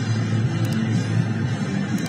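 Road traffic: car engines and tyre noise on a busy highway, a steady low rumble.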